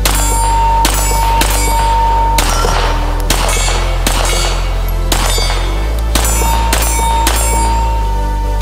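Zev OZ9 9mm pistol fired about ten times at a slow, uneven pace, roughly a shot a second, each shot sharp with a brief ring after it, over background music.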